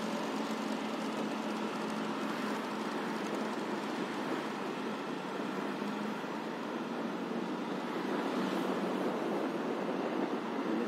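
Steady rushing wind and road noise from riding along in traffic, with a faint, steady low hum of an engine underneath.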